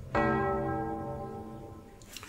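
A computer's bell-like alert chime: one struck tone that rings and fades away over about two seconds, marking that the image-registration task has finished.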